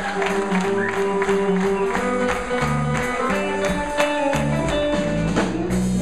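A live blues band playing: a drum kit keeping a steady beat under electric bass and electric guitar.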